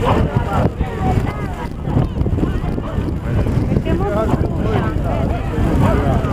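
Many people talking at once, overlapping voices with no single speaker clear, and wind buffeting the microphone with a heavy low rumble.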